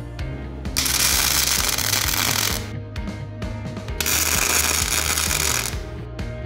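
Two arc-welding tack welds, each a dense crackling hiss of about two seconds, fixing a steel dog to heavy plate, the first about a second in and the second about four seconds in. Background music plays underneath.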